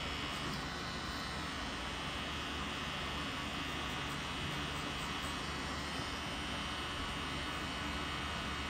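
Pen-style cartridge tattoo machine running with a steady electric hum as it drives red ink into the skin.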